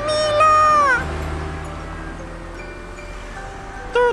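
A cartoon pet creature's high vocal cry, held for about a second and then sliding down in pitch. Soft background music follows.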